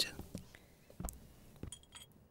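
A few faint clinks of glass tea glasses against saucers and a serving tray: light knocks about a second in, then a short ringing clink near the end.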